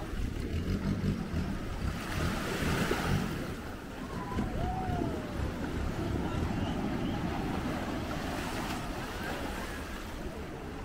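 Small waves washing up onto a sandy shore, with wind rumbling on the microphone.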